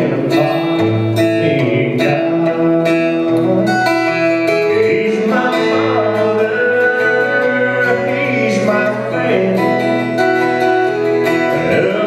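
Acoustic guitar strummed steadily while a man sings a song with it.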